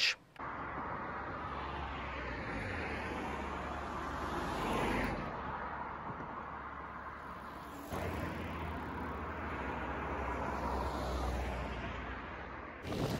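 Road traffic on a dual carriageway beside a cycle path, with wind rumble on a camera moving with a bicycle. The traffic noise swells as a car passes about five seconds in and rises again a few seconds later.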